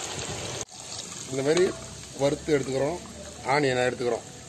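Sliced onions deep-frying in a kadai of hot oil, a steady sizzle; after a sudden cut just over half a second in, the sizzle goes on fainter while a person's voice speaks in three short stretches.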